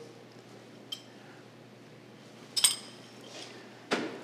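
Light clinks of small ceramic dishes being handled on a stainless-steel counter: a faint one about a second in and a sharper, briefly ringing one just past halfway, over quiet room tone.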